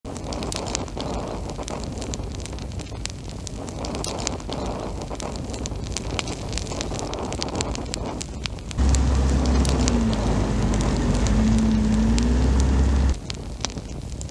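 Steady crackling, hissing noise full of fine clicks. About nine seconds in a loud low rumbling drone joins it, with a faint wavering tone above it, and cuts off about a second before the end.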